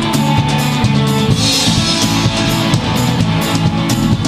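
Indie rock band playing an instrumental passage: a drum kit keeps a steady beat under guitars.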